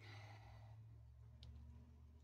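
A person's soft sigh at the start, then near silence over a low steady hum, with one faint click about one and a half seconds in.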